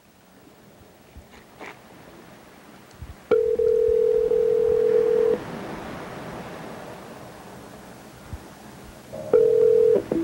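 Telephone ringback tone over a phone line: the called phone is ringing at the other end. A steady tone lasts about two seconds, quiet line hiss follows for about four seconds, and the tone starts again near the end. A few faint clicks come before the first ring.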